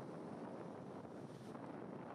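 Faint, steady rush of wind and sea water past a ship under way, with wind on the microphone.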